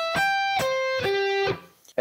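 Music Man electric guitar with a clean tone, alternate picked slowly one note at a time through the top and way down of an A minor seven arpeggio: a high G, then C, then a lower G, each ringing about half a second. The last note is cut off about one and a half seconds in.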